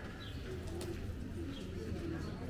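Birds calling: a low call repeated about every half second, with faint higher chirps, over a steady low hum.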